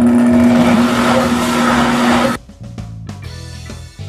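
Countertop blender running, blending a liquid chocolate pudding mixture of condensed milk, cream and chocolate powder with a steady whir. It is switched off and stops suddenly a little over two seconds in.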